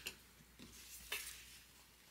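Light clicks and knocks of a rotary leather hole punch being picked up and handled, three of them, the loudest about a second in.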